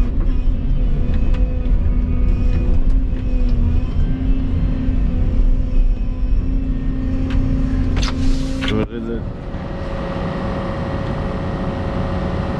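Volvo EC220E excavator's diesel engine running steadily with a low rumble and hum, heard from inside the cab as the machine travels. A little after eight seconds there is a short rushing noise, after which the engine note changes and the sound drops slightly in level.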